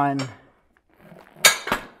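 A single sharp metallic clank with a short ring, about one and a half seconds in, from the steel frame of an adjustable weight bench as its angle is changed. A man's voice trails off just before it.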